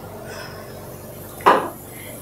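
A single short, sharp tap about one and a half seconds in, over faint room tone.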